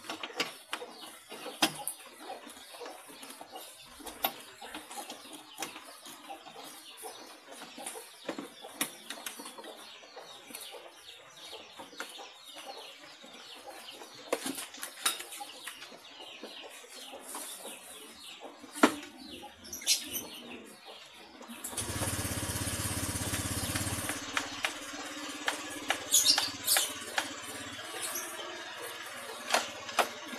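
Small plastic clicks and rustles as a headlight bulb and its socket are handled and refitted in a scooter's front fairing. About two-thirds of the way in, a Honda Vario 125 single-cylinder engine starts with a brief louder rush, then settles into a steady idle, which lights the headlight.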